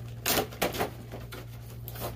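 Plastic toy packaging being handled as it is opened: a few sharp clicks and crackles in the first second, then quieter rustling.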